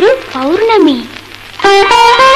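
Malayalam film song: a female voice ends a sung phrase on a long note that glides up and back down, over instrumental accompaniment. Near the end, instruments take up the melody on their own as an interlude begins.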